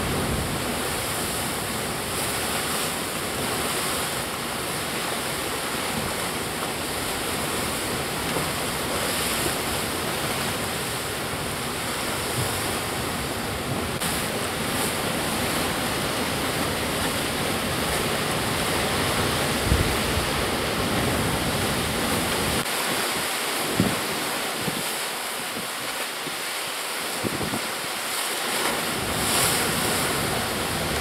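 Sea surf breaking and washing over a rocky shoreline: a steady rush of white water that swells slightly now and then.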